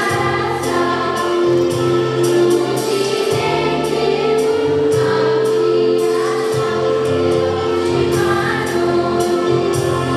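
Girls' choir singing in harmony, with a long held note through the middle, over an instrumental accompaniment with a moving bass line and a light steady beat.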